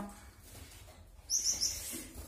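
A small cage finch giving three short, high chirps in quick succession about a second and a half in.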